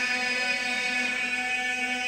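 A steady droning tone holding one pitch, with a stack of even overtones above it.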